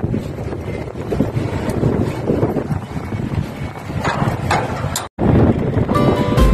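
Wind buffeting the microphone: a steady, rough rumbling noise, with a couple of faint brief knocks about four seconds in. The sound drops out for a moment just after five seconds.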